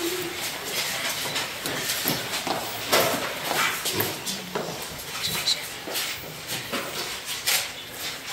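Shuffling footsteps on a parquet floor and the rustle of a cloth blanket being shaken out and laid over someone, as a string of irregular soft scuffs and clicks.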